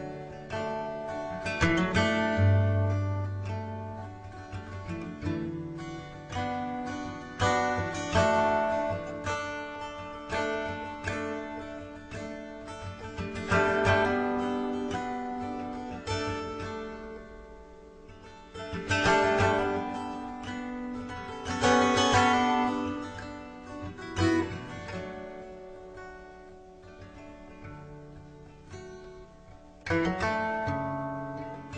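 Acoustic guitar music, with plucked and strummed notes that ring and decay in a steady run of phrases.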